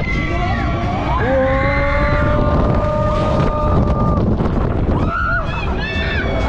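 Wind rushing over the microphone as the ride swings high, with several riders' long drawn-out screams overlapping, one rising in about a second in and held for over two seconds.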